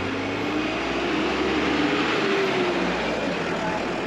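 A bus driving past close by: its engine note and tyre noise build to their loudest about halfway through, then the engine note drops as it goes by.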